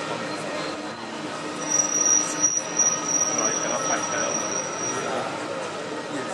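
Steel wheels of a Panama Canal electric towing locomotive ("mule") squealing on the lock-wall rail track: one steady high squeal of about three seconds, starting a couple of seconds in, over crowd chatter.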